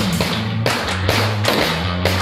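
Background music with a steady drum beat and sustained bass notes.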